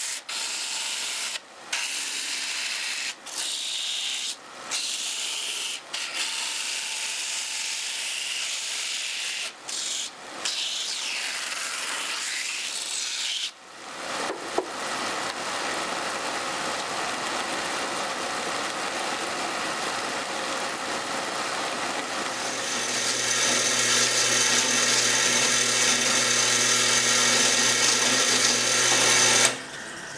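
Large shop drum sander running, its spinning sandpaper drum grinding down a carved mandolin top as the top is fed under it: a steady noisy sanding sound broken by several short gaps. About halfway through the sound changes, and later a steady motor hum joins in and it grows louder.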